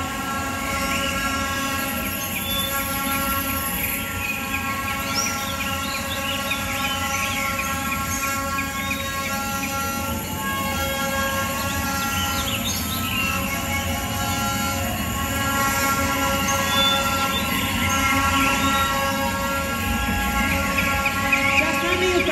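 Backing track over the stage PA: a sustained chord of many held tones that does not change, with short chirping, bird-like calls over it, growing a little louder near the end.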